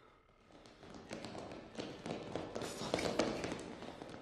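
Quick, irregular footsteps with cloth rustling close to the microphone, building up about half a second in and loudest around three seconds in.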